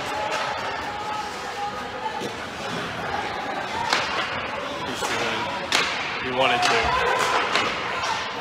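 Ice hockey play at the rink: a few sharp knocks of puck and sticks against the boards, the two loudest about four and six seconds in, over steady crowd chatter.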